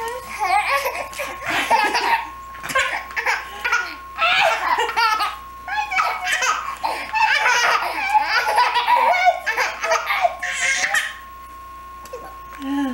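Infant belly-laughing in repeated bursts of high giggles, stopping about a second before the end.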